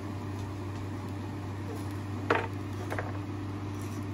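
Black pepper being put on raw ground turkey: one short rattle about two seconds in and a fainter one near three seconds, over a steady low hum.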